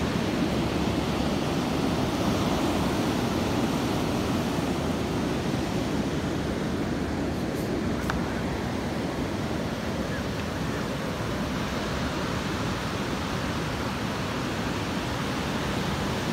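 Ocean surf breaking and washing up a sandy beach: a steady rushing noise that eases a little after the first few seconds.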